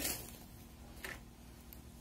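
Quiet room tone with a steady low hum and one faint, brief rustle about a second in.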